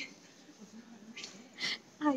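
Two short breathy exhales from a person, the second louder, in the second half, over quiet room tone with a faint murmur of distant voices.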